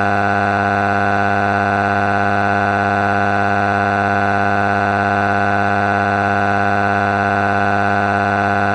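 A loud, steady buzzing tone on one unchanging pitch, rich in overtones, with no rise or fall.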